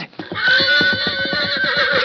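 A horse whinnying: one long, pulsing neigh, a radio-drama sound effect.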